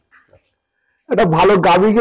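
A man speaking, starting about a second in after a near-silent pause.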